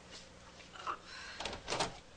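A door being shut, with a quick run of sharp clicks and knocks from the door and its latch about a second and a half in.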